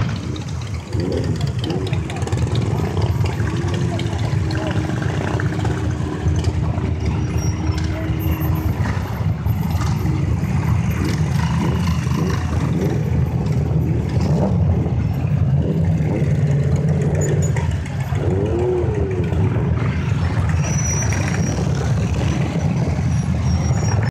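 A group of motorcycle engines running and riding slowly past in a line, making a steady low rumble, with people talking over it.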